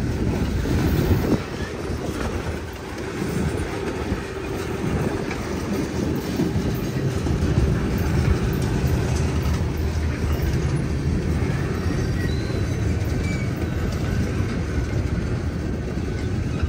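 Freight train's boxcar and tank cars rolling past close by: a steady rumble and rattle of steel wheels on rail.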